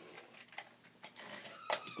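Quiet handling of card stock and a hand-held adhesive applicator: faint rustles and small ticks, with one sharper click near the end.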